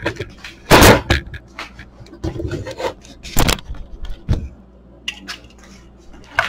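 Scattered clicks, knocks and scrapes of hands handling the brass hose fittings and caps on top of a Pittsburgh 2.5 CFM vacuum pump; the loudest knock comes about a second in.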